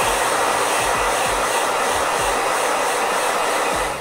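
Handheld hair dryer blowing steadily on a dampened latex goalkeeper glove palm to dry it, switched off just before the end.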